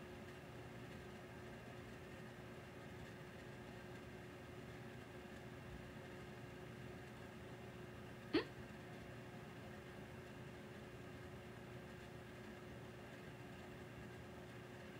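Quiet room tone with a faint steady hum; about eight seconds in, one very short vocal sound from a young woman that rises quickly in pitch.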